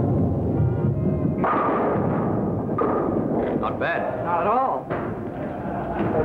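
Bowling ball rumbling down a wooden lane and crashing into the pins, with a sudden louder crash about a second and a half in, against background voices and music.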